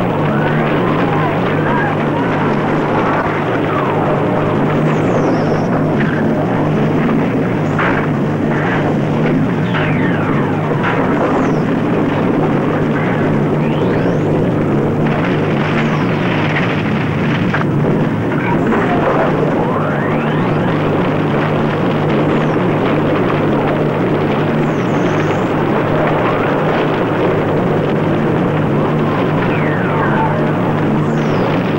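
Dramatised film soundtrack of Vesuvius erupting: a loud, steady roar with a constant low drone. Many high shrieks slide up and down over it throughout.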